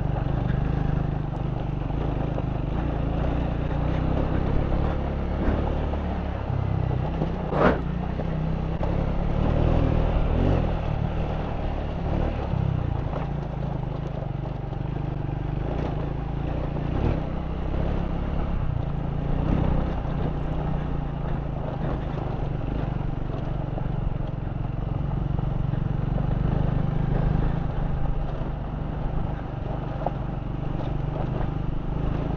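Motorcycle engine running steadily under way on a rough, stony gravel track, with the rattle of the tyres and bike over loose rock. There is one sharp knock about eight seconds in.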